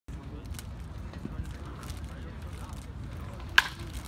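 A baseball bat striking a pitched ball: one sharp, loud crack about three and a half seconds in, solid contact on a hit driven into the outfield gap for a double. A low steady background rumble runs beneath.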